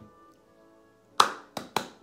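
Three sharp hand claps: the first and loudest about a second in, then two quicker, lighter ones near the end, over the faint tail of music.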